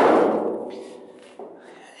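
A hand slapping the steel hood of an old pickup: one sudden thump with a ringing decay that dies away over about a second, then a small tap.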